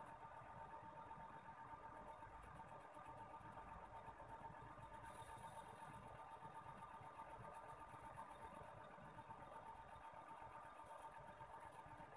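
Near silence: faint steady room noise with a thin steady tone.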